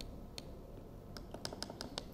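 Faint, light clicks of a stylus tapping on a tablet screen: a single tap, then a quick run of about seven taps near the end.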